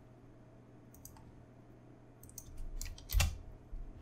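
A few sharp computer mouse clicks and key presses, spread irregularly, with a louder click and thud about three seconds in: points being placed and a path closed and turned into a selection in an image editor.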